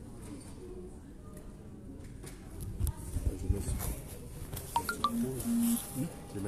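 Handling noise from a phone being moved while it records: dull knocks and rubbing on the microphone, then a few short electronic beeps near the end.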